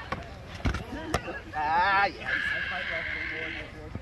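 Two sharp hits of padded weapons on shields, then a person's high-pitched wavering cry that flattens into a long held shrill note.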